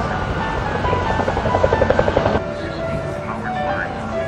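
Helicopter's two-blade rotor beating in rapid, even pulses, about ten a second, over background music; the beat cuts off suddenly about two and a half seconds in.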